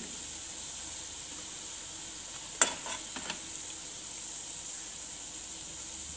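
Cooking oil sizzling steadily in a frying pan. A sharp clink comes about two and a half seconds in, followed by two lighter clinks.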